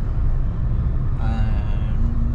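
Steady low road and engine rumble heard inside a moving car. Past the middle, a person's voice holds one long, even vocal sound.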